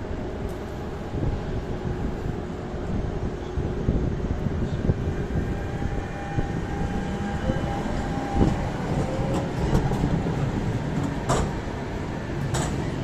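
Low-floor city tram rolling past at close range: steady rumble of wheels on rail with a faint whining tone, and a sharp clack near the end.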